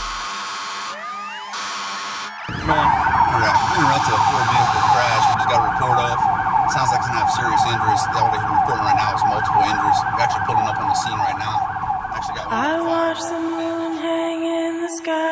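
Emergency vehicle siren sounding in fast up-and-down sweeps, starting about two and a half seconds in. Near the end it gives way to a steady low musical drone.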